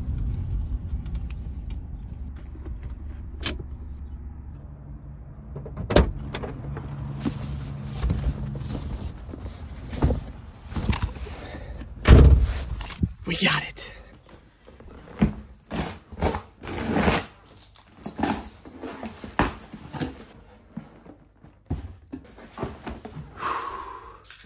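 Car engine idling, heard from inside the cabin, with a few sharp knocks over it. About twelve seconds in there is a loud thunk, then a run of short clicks and rustles.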